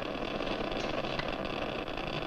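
Geiger counter crackling with rapid, dense clicks at a steady rate, the sign of a burst of radioactivity being detected.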